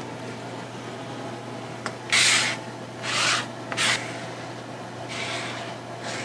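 A thin card rubbing across a screen-printing press platen, spreading liquid platen adhesive in four short scraping strokes.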